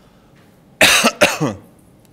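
A person coughing twice in quick succession, loud and close, the second cough trailing off with a falling voiced tail.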